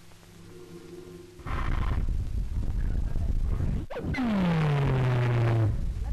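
Ship's funnel-mounted steam whistle blowing over a rushing hiss. About four seconds in, a deep blast sounds and slides down in pitch for about a second and a half before cutting off.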